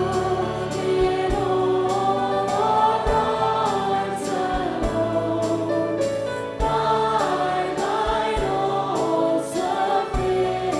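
A hymn sung by a woman at a microphone together with the congregation, accompanied by a digital piano playing steady chords.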